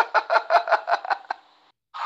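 A man laughing in a quick run of short bursts, about six a second, heard through a phone voice note, stopping a little under a second and a half in.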